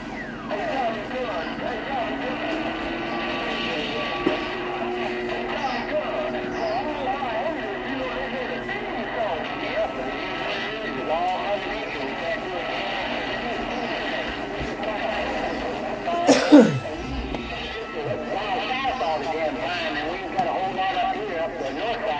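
CB radio receiving distant stations on skip: garbled, overlapping voices that cannot be made out, through static with whistling tones. A high steady whistle comes in briefly a few seconds in, and about 16 seconds in a loud squeal sweeps down in pitch.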